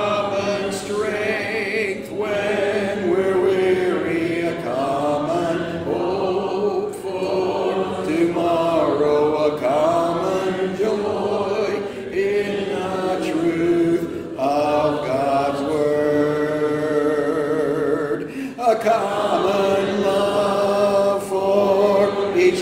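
Congregation singing a hymn together a cappella, many voices without instruments, pausing briefly for breath between phrases.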